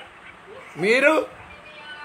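A single loud vocal call near the middle, about half a second long, with a pitch that rises and then falls.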